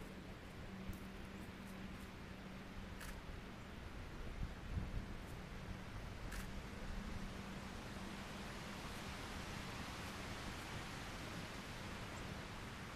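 Quiet background hiss with a faint steady low hum, a few faint ticks, and a couple of soft low thumps about four to five seconds in.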